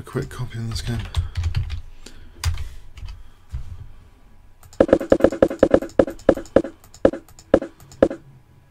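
Typing on a computer keyboard: a fast run of keystrokes starting about halfway through, slowing to a few single strokes near the end.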